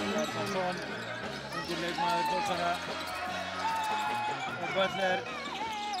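Live basketball game sound in a gymnasium: the ball bouncing on the hardwood court, with the voices of players and spectators and short squeaky tones.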